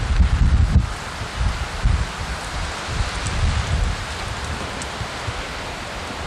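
Wind buffeting the microphone outdoors in gusts, low rumbles over a steady hiss, heaviest in the first second and easing after.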